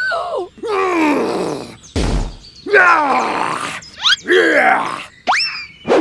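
Comic cartoon sound effects: several pitched, groan-like slides that fall in pitch, with a thump about two seconds in and quick rising whistle-like sweeps near the end.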